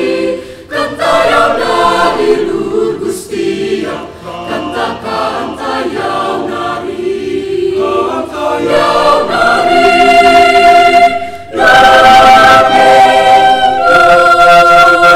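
Mixed youth choir singing in parts, the voices swelling toward the end, briefly breaking off, then coming back in on a loud held chord.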